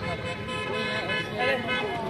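A horn sounding steadily, under spectators' voices.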